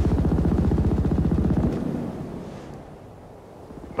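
A sudden low, rapidly pulsing rumble of trailer sound design, about twenty pulses a second, loudest for the first second and a half and then fading away.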